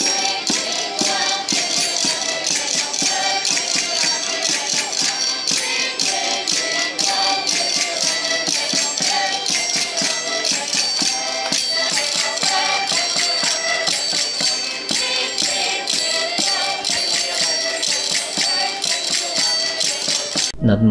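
Live Madeiran folk music: accordions, a drum and a small strummed guitar playing a quick dance tune, with the constant jingling rattle of a brinquinho (castanets and bells on a doll staff) and voices singing along.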